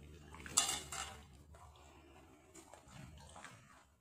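A metal fork clinking against a plate: a sharp clatter about half a second in, another about a second in, then a few lighter taps.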